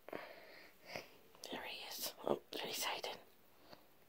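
A person whispering a few short phrases, with brief pauses, stopping a little after three seconds.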